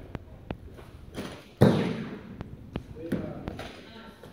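A loaded Olympic barbell with bumper plates being cleaned: a rising pull, then one sudden loud clash about a second and a half in as the bar is caught on the lifter's shoulders, fading over about half a second.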